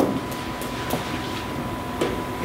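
Room tone in a meeting room: a steady low rumble with a thin, steady whine and a few faint clicks, one just at the start.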